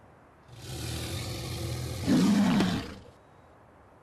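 Dinosaur roar sound effect for a CGI Acrocanthosaurus: a low growl that builds from about half a second in, swells into a louder roar a little after two seconds, and cuts off suddenly about three seconds in.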